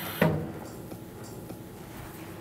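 A woman says a single short word, then quiet room tone with no clear sound event.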